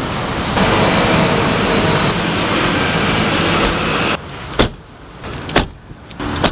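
Steady car and street traffic noise that drops away after about four seconds, then two sharp car-door clunks about a second apart.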